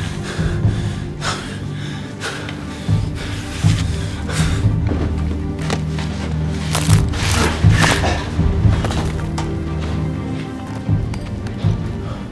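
Film score with low sustained, pulsing bass tones, overlaid by several sharp knocks and thuds that cluster around the middle.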